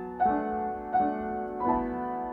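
Background piano music: slow chords, a new one struck about every three-quarters of a second.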